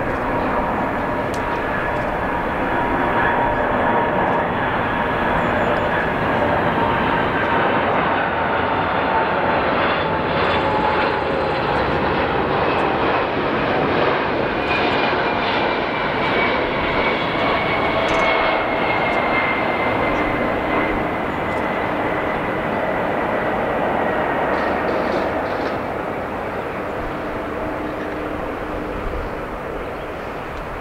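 Boeing 747-400's four Pratt & Whitney PW4056 turbofans on landing approach: a loud, continuous jet roar with whining tones that slowly fall in pitch as the airliner passes, easing off near the end as it comes down to touchdown.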